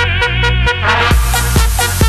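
Electro dance music from a DJ mix: a steady kick drum about twice a second under a wavering synth line. About a second in, a bright, hissy high layer comes in as a new section starts.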